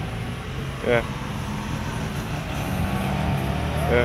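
Car engines running at low speed as cars pull out and pass on the road, a steady low hum of road traffic, with a short vocal sound about a second in.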